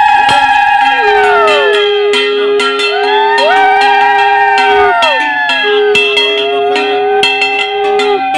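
Several conch shells (shankha) blown in long, overlapping notes. Each note rises in pitch as it starts and sags at its end, and one lower note is held steady. A hand bell rings rapidly alongside them, as is customary at the installation of the puja pot.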